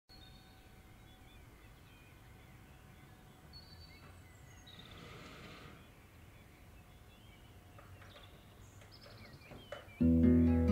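Very faint room ambience with distant bird chirps, and a few small clicks shortly before the end.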